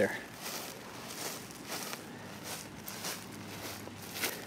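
Footsteps through semi-tall bahia grass, a soft step roughly every half second.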